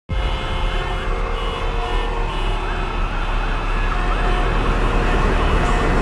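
Dense city traffic noise with a low rumble and sirens wailing over it.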